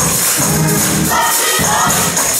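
Live gospel praise music: a group of voices singing together with a tambourine shaken and struck in time over them, loud and steady throughout.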